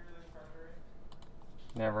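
A few separate keystrokes on a computer keyboard, short sharp clicks, as a form is filled in and submitted.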